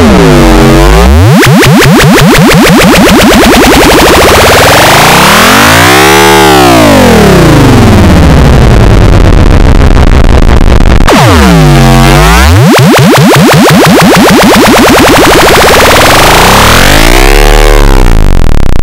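Heavily effect-processed Samsung phone startup jingle, distorted and at clipping level. Its pitch sweeps slowly down and up in waves, low about a second in and near 12 s, high around 6 s and near the end.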